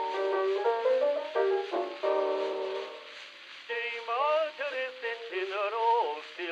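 Music from a 1903 acoustic gramophone record: an accompaniment passage of steady held notes between sung lines, dipping about three seconds in, then wavering, gliding notes entering, all narrow and thin in the top end.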